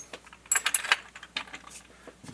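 Small metal parts clinking as they are handled: a quick run of sharp clinks and ticks about half a second to a second in, then a fainter tick.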